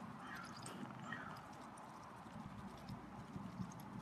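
Canada goose pecking at bare dry dirt close by: a scatter of small clicks and ticks from its bill on the ground. Two short, high, falling chirps come within the first second or so.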